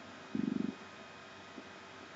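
A man's short, low, rattly vocal sound, under half a second long, about a third of a second in. It sits over the steady hiss and hum of an old film soundtrack.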